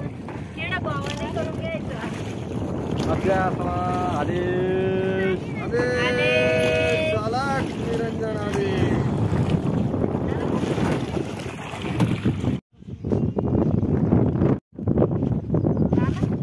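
Wind buffeting a phone microphone in an open boat on the water, a steady rumbling rush. In the middle, several voices call out in long, drawn-out shouts. Near the end the sound cuts out abruptly twice.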